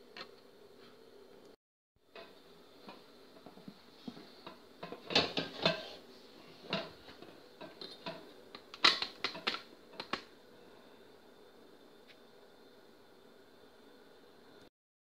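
Light clicks and clinks of a stainless steel pot and its glass lid being handled on a gas hob, in two short bunches, over faint room noise.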